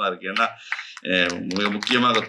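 A man speaking Tamil into a microphone, with a short pause about half a second in before he carries on.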